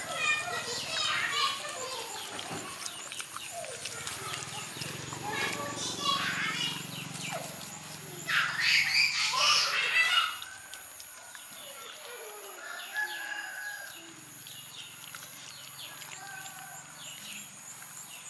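Chickens calling on and off, the loudest a call of about two seconds a little past halfway through, over a faint steady high-pitched drone.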